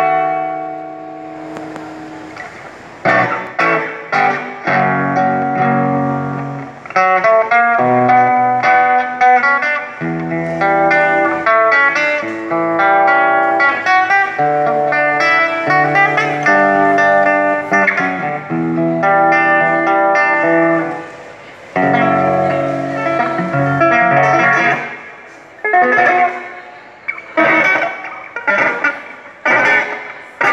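Acoustic guitar played solo: a picked melody over chords that change in steps, then short, choppy strummed chords in the last few seconds.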